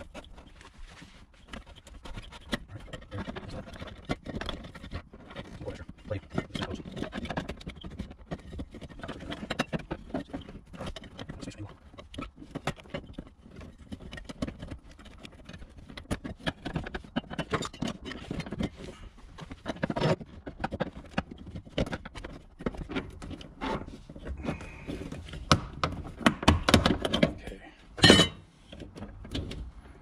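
Clicking, scraping and knocking of hands working loose the plastic lock ring over the in-tank low pressure fuel pump of a BMW 335is, with one sharp, loud clack about two seconds before the end.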